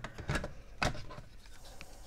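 A handful of light clicks and knocks from the car's body control module, a circuit board in its plastic housing, being handled and picked up on a bench mat. The sharpest click comes a little under a second in.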